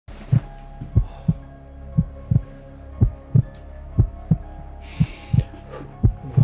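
Heartbeat sound effect in a suspense soundtrack: paired low thumps about once a second over a steady low drone, with a brief hiss about five seconds in.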